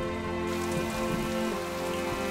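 Steady rain falling, with soft background music of long held notes.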